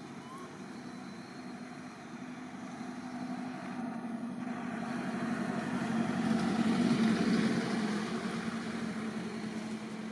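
A motor vehicle passing: a steady engine hum grows louder to a peak about seven seconds in, then fades again.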